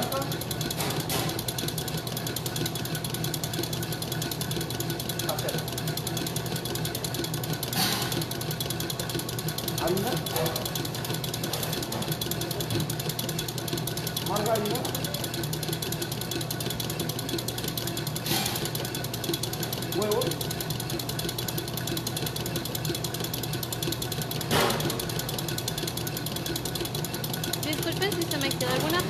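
Electric mixer motor running steadily with a fast, even pulsing hum, with a few short knocks about 8, 18 and 25 seconds in.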